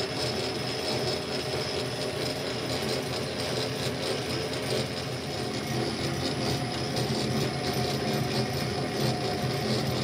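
Small metal lathe running steadily, turning a mild-steel barrel arbor between centres, with the cutting tool taking a cut along the steel.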